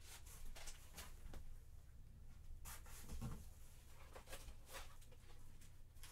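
Faint handling noise: light, scattered ticks and rustles, a few a second at most, with no steady sound beneath.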